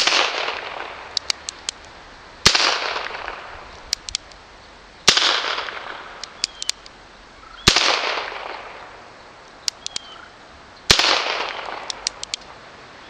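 Five shots from a Colt Frontier Scout .22 LR single-action revolver, about two and a half seconds apart, each followed by an echo that fades over about two seconds. Between shots come a few quick light clicks as the hammer is thumb-cocked for the next shot.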